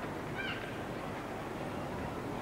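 Steady background noise of a gymnastics hall, with one short high-pitched sound about half a second in.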